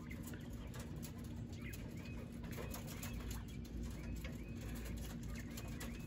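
Quiet yard ambience: faint, short, high bird chirps come every half second to a second, over a low steady hum.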